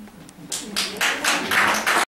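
A small audience applauding, starting about half a second in.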